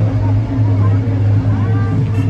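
A loud, steady low hum like a running engine, with voices in the background.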